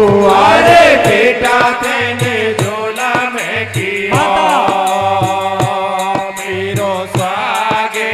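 Live devotional folk kirtan music: a harmonium plays sustained chords under voices singing in gliding phrases. A steady beat of percussion and hand claps runs under them.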